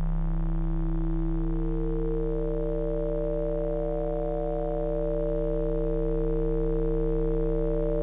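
Electronic sine-tone drone: steady pure tones held together, with higher tones entering one after another in the first few seconds to build a sustained chord, and a higher tone briefly joining midway and again near the end.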